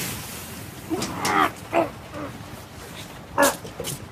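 A man's voice making a few short, wordless moaning sounds.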